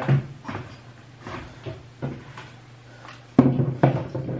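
Light knocks and clicks of groceries being put away in a kitchen, with a louder thump about three and a half seconds in, like a cupboard or fridge door being shut.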